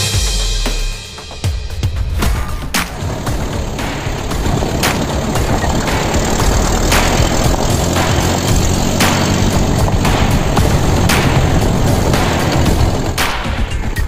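Background music with a driving drum-kit beat and a strong hit about every two seconds. It briefly drops about a second in.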